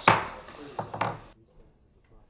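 Three sharp knocks on a table close to a microphone, the first and loudest right at the start and two more about a second in. The room sound then cuts off abruptly, as the microphones go off for a recess.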